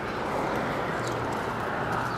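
A steady low hum over even outdoor background noise, with no distinct events.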